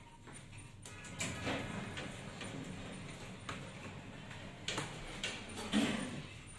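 Background music over lobby ambience, with several sharp knocks scattered through, the loudest near the end.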